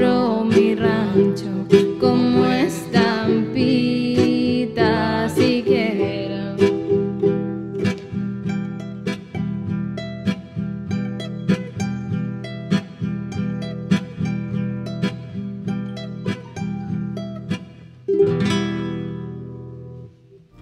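Ukulele and classical guitar playing the closing instrumental bars of a slow ballad, a steady run of plucked notes. About eighteen seconds in they strike a final chord that rings and fades away.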